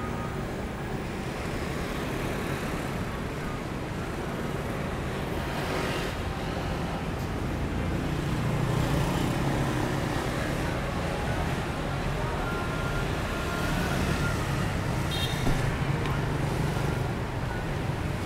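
Street traffic: cars and motor scooters passing, a steady low rumble that swells twice, about eight seconds in and again near the end.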